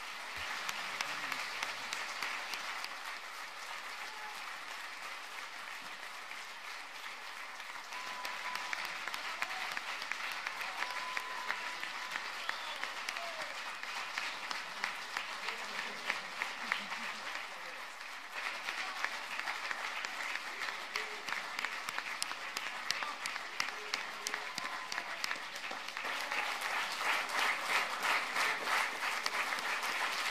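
A large audience applauding continuously, the clapping swelling in waves and loudest over the last few seconds.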